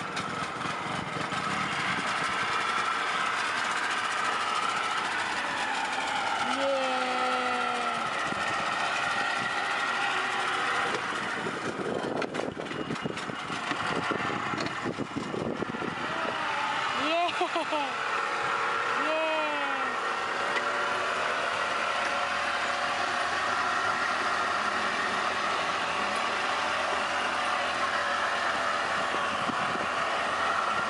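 Small outboard motor running steadily. A voice rises and falls briefly about seven seconds in and again around seventeen to twenty seconds.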